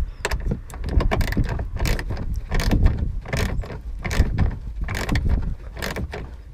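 Small hand ratchet clicking in short irregular runs as it tightens the taillight's mounting nuts onto their studs.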